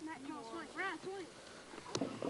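Faint children's voices calling out, a few short rising-and-falling calls in the first second or so, then a sharp click near the end as the video tape recording cuts.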